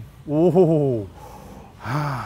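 A voice gives a drawn-out exclamation, 'oh-ho', rising briefly and then falling in pitch, followed near the end by a short breathy gasp.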